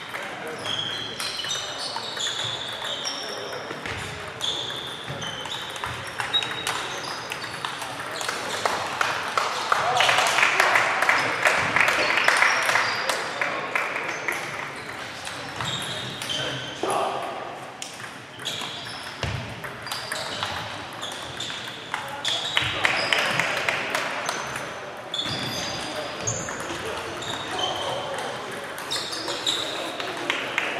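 Table tennis balls clicking off bats and tables, many rallies overlapping at once, over a murmur of voices in a large echoing sports hall. The voices and noise swell louder for a few seconds about ten seconds in, and again a little past twenty seconds.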